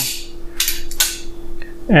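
Bremen locking pliers (Vise-Grip style) being squeezed shut and snapping into their locked position. Two sharp metallic clicks, a little under half a second apart.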